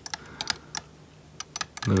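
A metal spatula clicking and scraping irregularly against a small glass jar while it stirs spray-can paint to drive off the dissolved gas. A voice starts just before the end.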